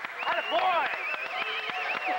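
Spectators and coaches at a wrestling match shouting over one another, with one high voice holding a long, wavering yell through the second half.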